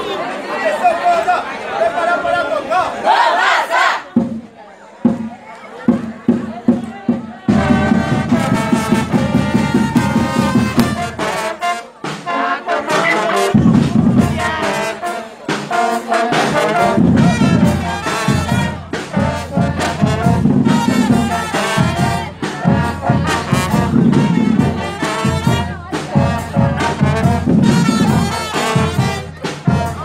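School marching band of trumpets, trombones and drums. The first few seconds hold voices and scattered drum strokes; about seven seconds in the full band comes in, playing a loud brass tune over steady percussion, with a brief break around twelve seconds before it resumes.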